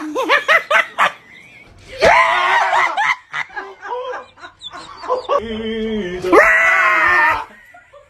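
People screaming in fright and laughing: a quick run of giggling at the start, a loud scream about two seconds in, chuckling, then another loud scream near the end.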